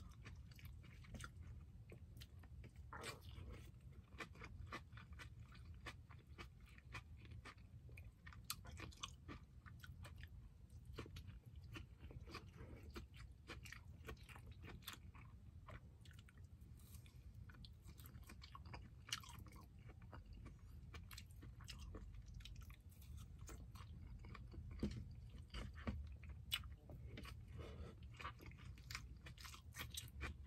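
Faint close-up eating sounds of a person chewing and biting grilled barbecue meat and fish: scattered small wet clicks and crunches over a low steady hum.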